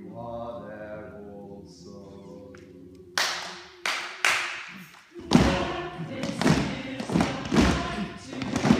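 A group of amateur singers holds a sung chord for about three seconds. A run of loud, irregular knocks and thuds follows, a few at first, then thick and fast from about five seconds in.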